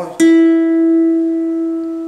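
Steel-string acoustic guitar: a single note on the third string at the ninth fret (an E) is plucked a moment in and left to ring, slowly fading.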